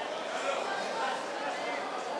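Indistinct chatter of several voices over a steady background hum of noise, with no words clear enough to make out.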